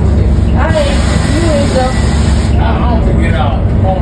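Voices talking over the steady low rumble of a city bus's idling engine, heard from inside the bus. A high hiss runs for about two seconds starting about a second in.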